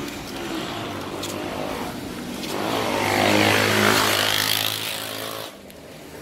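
Road traffic with a motor vehicle engine passing close by, growing louder about three seconds in and then fading away. The traffic is loud.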